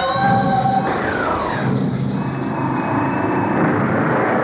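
Soundtrack of a 1970s Hong Kong superhero film: loud music comes in suddenly, with a falling tone about a second in, over a dense, noisy sound-effect texture.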